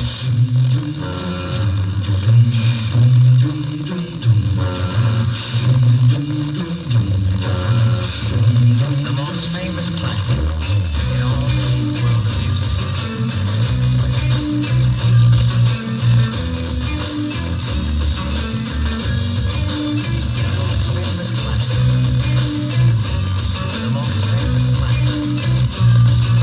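FM broadcast of Radio Iskatel on 100.6 MHz, received in stereo over a 425 km tropospheric path on a JVC car stereo: guitar-based music with a strong bass line.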